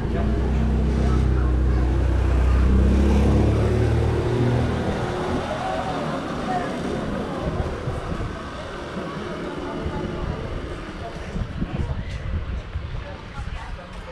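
A motor vehicle's engine droning low for about the first five seconds, loudest a couple of seconds in, then fading away under the murmur of street voices.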